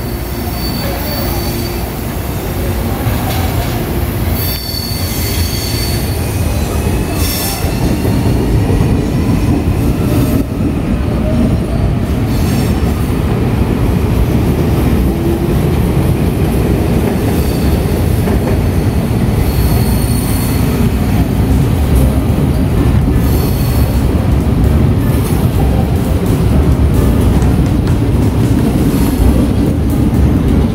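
Santa Matilde electric multiple unit rolling slowly over the station pointwork and past, its wheels and running gear making a steady rumble that grows louder over the first several seconds. Thin, high wheel squeals come and go every few seconds, with clicks over the rail joints and switches.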